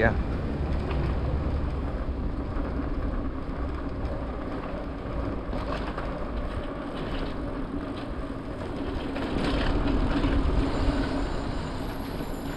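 Wind noise on the microphone and tyre rumble from a mountain bike rolling along a rough asphalt street, with a steady low hum underneath that grows louder near the end.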